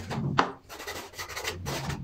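Hand sanding of a carved wooden piece with a flat sanding stick: rasping back-and-forth strokes, a little under one per second, with a sharp click about half a second in.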